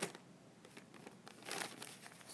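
A folded paper note rustling and crinkling as it is handled: a short rustle at the start and another about a second and a half in.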